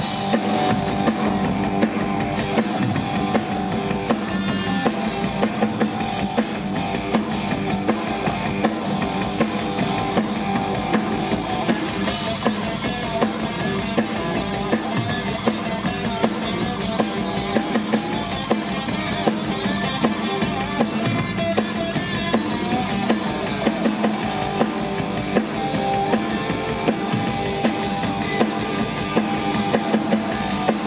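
A rock band playing live: distorted electric guitars over a drum kit keeping a steady beat.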